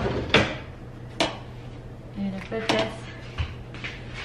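Kitchen handling sounds: several sharp knocks and clatters spread through, with a short squeak a little past halfway, as oven mitts are fetched from the counter.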